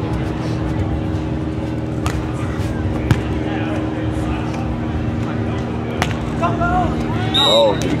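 A volleyball being struck by hand during a beach rally: three sharp smacks of hand on ball, with the second the loudest. A steady low hum runs underneath, and shouts of players and spectators come in near the end.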